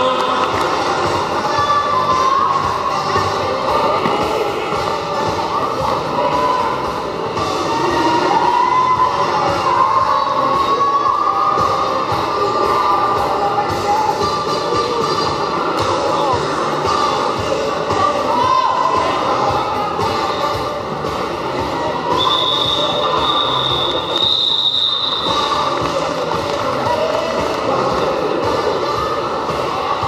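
Quad roller skate wheels rolling and squealing on a sports hall floor as a pack of derby skaters moves around the track, over a steady hubbub of voices. A long, high steady tone sounds for about three seconds, starting about 22 seconds in.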